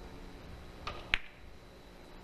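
A three-cushion billiards shot: a soft click as the cue tip strikes the cue ball a little under a second in, then a sharp, louder click about a quarter second later as the cue ball hits another ball.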